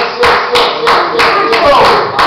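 Congregation clapping hands in a steady rhythm, about three claps a second, with voices singing a held tune along with the clapping.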